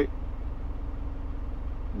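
Steady low background rumble with a faint constant hum, engine-like in character, filling a pause in speech.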